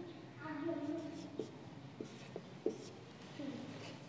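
Marker pen writing on a whiteboard, with several sharp taps as digits and a line are drawn.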